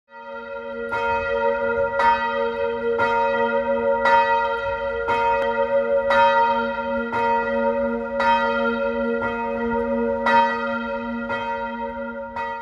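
A single church bell tolling, struck about once a second with the same pitch each time, its hum ringing on between strokes.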